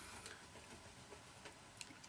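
Near silence with a few faint ticks: a marker tip tapping dots onto card along a ruler.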